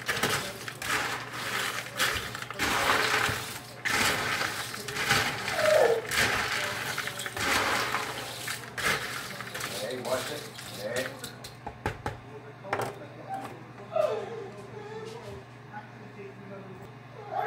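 Dry snack mix of pretzel sticks, pretzel twists, Bugles and peanuts being stirred with a plastic spoon in a large plastic bowl: a busy crunchy rattling and scraping with many small clicks, which thins out after about eleven seconds.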